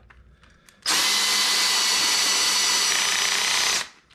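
Ridgid cordless drill running at steady speed with its bit working in a black plastic crab-trap panel: one continuous run of about three seconds, starting about a second in and stopping just before the end.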